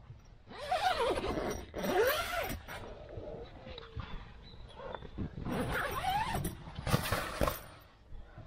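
Zipper on a rooftop tent's fabric window being pulled open in about four strokes, the pitch of each rising and falling, with the tent fabric rustling between them.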